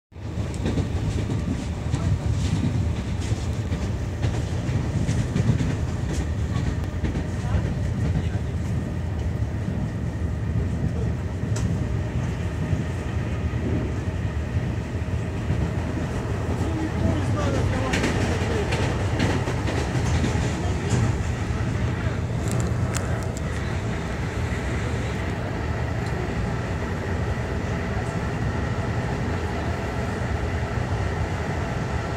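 Inside a suburban train's passenger car: the steady low rumble of the running carriage, with scattered clicks and rattles and passengers' voices murmuring in the background.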